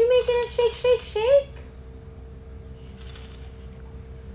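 A toy rattle shaken in two bursts: a first shake in the opening second and a half under a high, sing-song voice, and a shorter shake about three seconds in.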